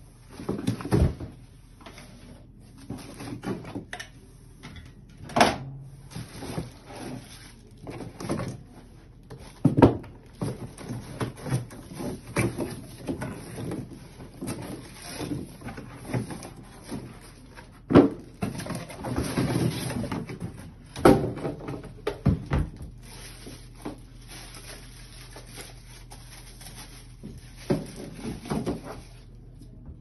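Cardboard box and molded pulp packing being handled: irregular knocks, thumps and scraping with rustling of plastic wrap as parts are lifted out, the sharpest knocks coming several seconds apart. Handling noise thins out in the last part, leaving a low steady hum.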